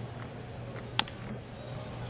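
Single sharp crack of a baseball bat hitting the ball about a second in, as the batter hits a chopper toward the mound, over a low steady background hum.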